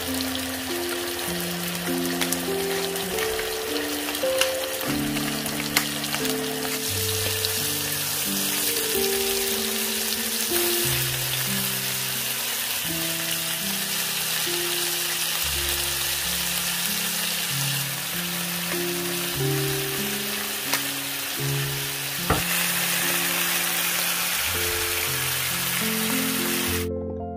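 Chicken breasts frying in fat in a nonstick pan: a steady sizzle with a few sharp clicks, with background music playing over it.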